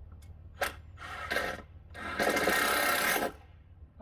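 Steel tape measure handled while measuring a gutter run: a click and a snap, a short rasp, then the blade rattling back into its case in about a second-long rush.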